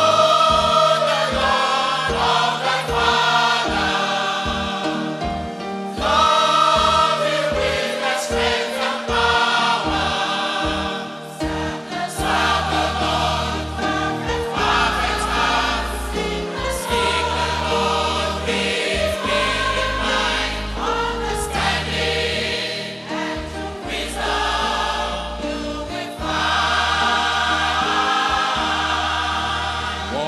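Adult church choir singing a gospel song with instrumental backing. The bass under the voices plays short repeated notes for the first part, then long held notes from about halfway through.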